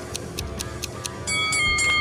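Countdown timer sound effect ticking about four to five times a second over soft background music. The ticks stop a little past a second in, when a ringing chime sounds to mark that the time is up.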